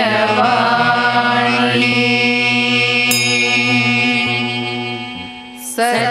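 Female voices chanting a Sanskrit verse in Carnatic style with instrumental accompaniment. The voices hold one long note that fades out near the end, and the next phrase begins.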